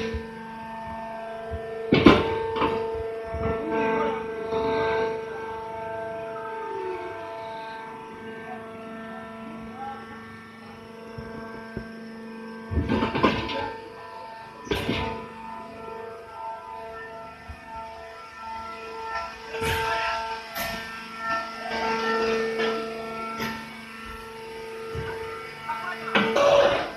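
Hydraulic baler running with a steady hum while compressing a bale of husk or shavings, with a few sharp clanks along the way.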